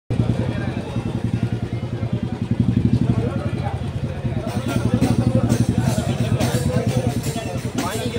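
A small engine, likely a motorcycle, running steadily close by amid crowd chatter; about halfway through, sharp repeated strikes join in.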